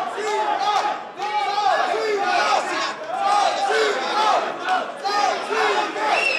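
A crowd of fight spectators shouting, many raised voices overlapping without a break.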